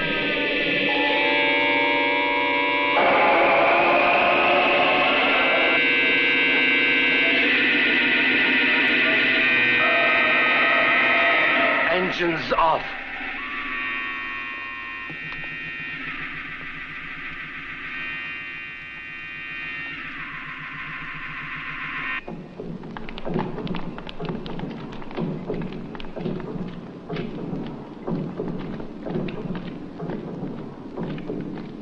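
Electronic science-fiction film soundtrack: layered, sustained electronic tones that jump to new pitches every few seconds, with some gliding tones. About twelve seconds in comes a sharp burst, then quieter held tones, and from about two-thirds of the way through a rough, crackling rumble takes over.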